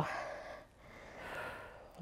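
A woman's breathing during hard exercise: two soft breaths, the first fading out just after the start and a longer one from about a second in.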